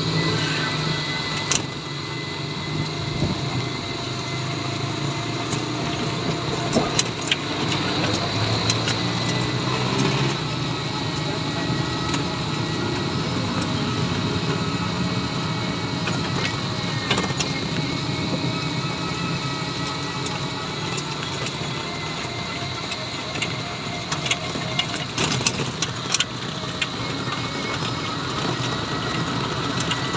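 Ride noise from a moving NWOW e-bike on a wet road: steady road and tyre hiss with a steady high whine, and scattered clicks and knocks from the cab frame. Vehicle engines in the surrounding traffic are also heard.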